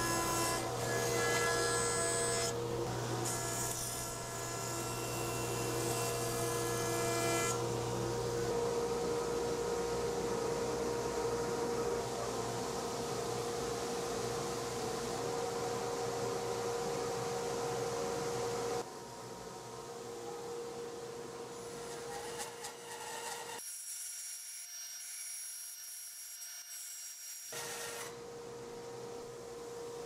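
Woodworking machines milling a walnut board: a jointer runs with its motor humming as the board is face-jointed. After an abrupt change about two-thirds through, a bandsaw runs as the board is resawn.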